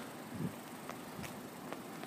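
Faint outdoor background noise in an open lot, with a few soft ticks spread through the pause.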